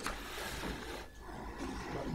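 Sheets of paper being shuffled and turned close to a desk microphone: two stretches of rustling with a short break about a second in.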